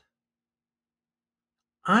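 Silence, then a voice starts a line of speech near the end.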